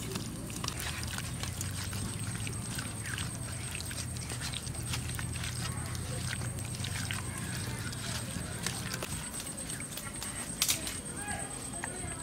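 A hand working fish pieces through a wet spice paste in a steel bowl: soft squelches and many small clicks against the metal, over a steady high-pitched whine.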